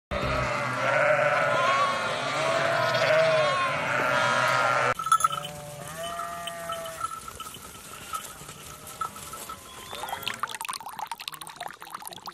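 A flock of sheep bleating, many voices overlapping at once for the first few seconds, then fewer, separate bleats.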